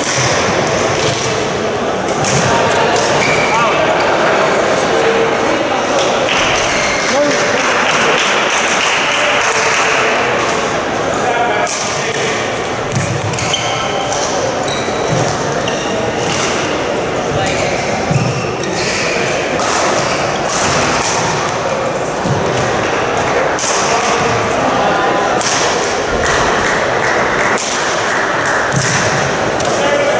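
Badminton play in a large, echoing sports hall: sharp racket strikes on the shuttlecock and thuds of footfalls on the court floor come again and again, over a steady murmur of voices.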